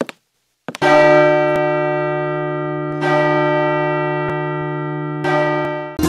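Church bell struck three times, about two seconds apart, each stroke ringing on and slowly fading. A couple of short sharp clicks come just before the first stroke.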